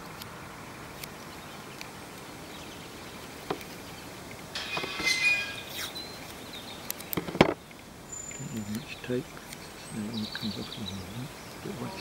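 Adhesive tape pulled off a roll in a brief ripping sound about five seconds in, followed by a single sharp click a couple of seconds later, over a steady background hiss.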